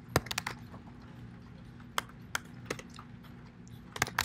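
Typing on a computer keyboard: a quick run of keystrokes, then single key presses about a third of a second apart, and another quick run near the end.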